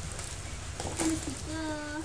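A woman's voice cooing to a baby in drawn-out, sing-song tones: a short call about a second in, then a long held note near the end.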